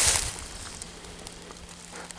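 Dry leaf litter rustling and crunching under footsteps: one louder crunch at the start, then faint crackly rustling.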